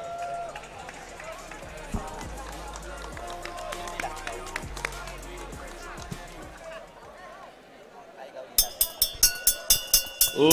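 Arena background of murmuring crowd and faint voices. About eight and a half seconds in, music with a sharp, quick beat starts and becomes the loudest sound.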